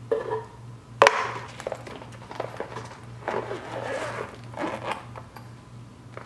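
A plastic food container and a fabric insulated lunch bag being handled: a sharp plastic knock about a second in, then rustling and scraping of the bag and container.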